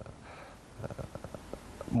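A hesitant pause in a man's speech, holding only faint mouth clicks and breath noise.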